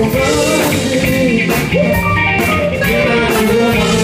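Live band playing: electric guitar over a drum kit, with evenly repeating cymbal strokes and melodic lines on top.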